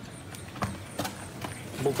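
A few scattered light taps and slaps of bare feet and a football being kicked on a concrete street.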